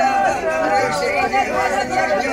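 Several women's voices crying and lamenting together in mourning, overlapping, with long held wailing notes.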